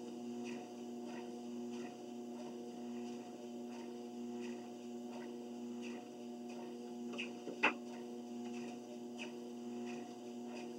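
Treadmill running with a steady motor hum under evenly spaced footfalls on the belt, a little under two a second. A single sharper click comes about three quarters of the way through.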